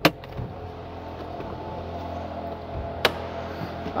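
2014 Ford Escape's 1.6-litre turbocharged EcoBoost four-cylinder idling just after a cold start, heard from inside the cabin as a steady low hum that grows slightly louder. A sharp click right at the start and another about three seconds in.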